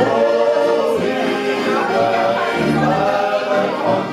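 A group of men singing a Bavarian folk song together in several voices.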